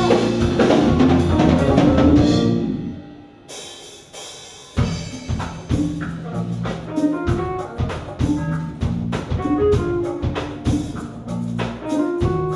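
Live band playing without vocals: drum kit and electric keyboard play together, drop away to a quiet moment a few seconds in, then the drums come back in with a sharp hit at about five seconds and carry on with a sparser groove under keyboard chords.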